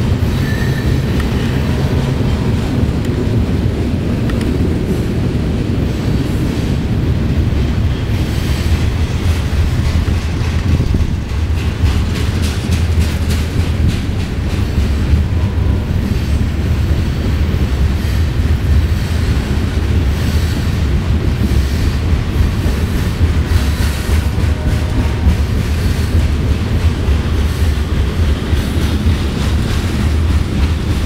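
Open-top freight cars of a CSX freight train rolling past close by, a loud, steady low rumble of steel wheels on the rails.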